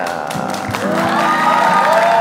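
Studio audience applauding and cheering over background music, with a steady held musical sound coming in about a second in.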